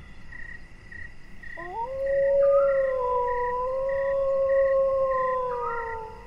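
A single long animal howl, jackal- or wolf-like, sound effect: it rises about a second and a half in, holds steady with a slight waver for about four seconds, then fades. Under it, a faint evenly repeating insect chirp, a little under twice a second.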